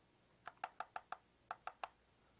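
Garfield Goose hand puppet clacking its beak: a quick run of five soft clacks, then three more. The clacking is the goose 'talking', which the host then interprets.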